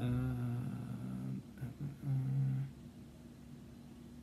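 A man's hesitant, thinking hum: a long, level "mmm" for over a second, then a shorter second one about two seconds in.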